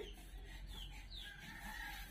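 Faint bird calls: a few short, falling chirps and one longer call near the end.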